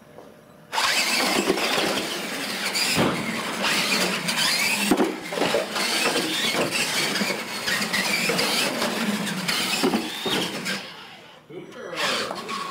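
Radio-controlled monster trucks racing flat out on a smooth tile floor: a loud squealing whine from motors and tyres starts abruptly about a second in, with several knocks along the way, and dies away near the end.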